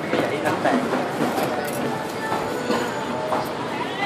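Indistinct chatter of several voices, with a few short clicks and scrapes of a steel knife against the large scales of a giant barb.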